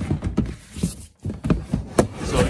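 A plastic storage tote being slid back into a wire shelving rack: a run of knocks, scrapes and rattles of plastic against the metal shelf, with a sharp knock near the end.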